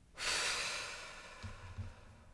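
A woman's long breath out, loud at first and fading away over about a second and a half, followed by a couple of soft knocks.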